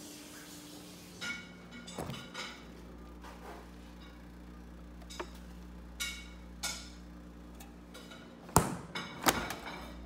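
Bottles and jars knocking and clinking against each other on a refrigerator's door shelves as someone searches through them, over a steady low hum. Two sharp knocks near the end are the loudest.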